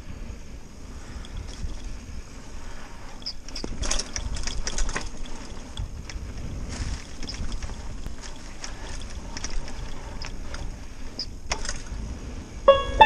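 Gary Fisher Cobia mountain bike rolling fast down a leaf-covered dirt single track, heard from a helmet-mounted camera: a steady low rumble from tyres on the trail, with scattered clicks and rattles from the bike over bumps, busiest about four to five seconds in.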